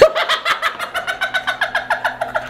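A man laughing hard in rapid, high-pitched bursts, about seven a second.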